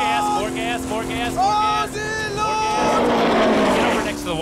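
NASCAR stock car's V8 running hard at speed, heard from inside the cabin as a steady drone, with a man's voice crying out over it. A rougher burst of noise comes in about three seconds in.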